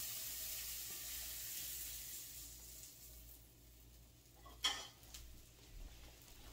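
Sautéed vegetables sizzling in olive oil in a frying pan that has come off the heat, the sizzle dying away over the first few seconds. A single sharp clink sounds near the end.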